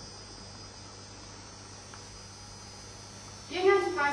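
Steady electrical mains hum with faint hiss during a pause, and then a person's voice starting near the end.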